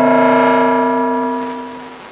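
A single struck, ringing musical tone from the film's soundtrack, several pitches sounding together like a gong, slowly fading away by the end.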